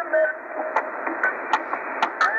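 Shortwave reception through a Tecsun PL-880's speaker, tuned to 3840 kHz lower sideband: narrow, thin-sounding static hiss with a brief tone near the start and a few sharp crackles about a second in.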